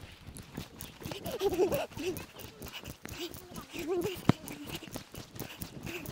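Quick running footsteps on a dirt path, with faint voices and a single sharp click a little after the middle.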